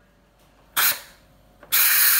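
Philips electric pressure cooker venting steam through its pressure-release valve after cooking: a short burst of hissing steam just under a second in, then, near the end, a loud steady hiss as the pressure is let out.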